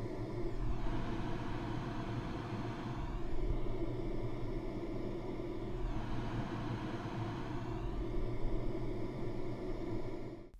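White noise from a studio monitor as picked up by a Shure SM7B cardioid dynamic microphone. The hiss holds steady but shifts in tone a few times as the mic is turned between side-on (90 degrees) and rear-on (180 degrees) to the speaker, the rear rejecting more of it.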